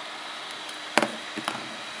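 A single sharp tap about a second in, then a couple of faint ticks, over a steady background hiss.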